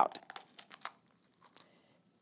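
Faint crisp cracks and tearing of a green bell pepper's seed core being popped out of the halved pepper by hand, a cluster of small snaps in the first second and one more about a second and a half in.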